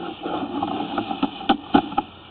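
Sewer inspection camera push cable being hauled back out of a corrugated drain pipe: irregular sharp clicks and knocks over a steady low hum.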